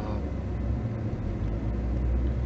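A car's engine and road noise heard from inside the cabin while driving: a steady low rumble that grows a little stronger as the car gets moving.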